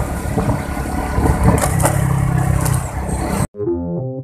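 Motorcycle riding noise picked up by a helmet-mounted phone: the engine running under heavy wind rush on the microphone. About three and a half seconds in it cuts off abruptly, and synthesizer music with stepping keyboard notes begins.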